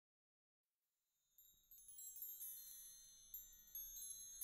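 Silence for about a second, then high tinkling chimes fade in and keep building, many overlapping ringing tones struck lightly: the opening of a psychedelic space-rock track.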